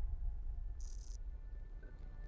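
Sci-fi TV soundtrack: a steady low drone with faint held tones above it, and a brief high electronic chirp about a second in.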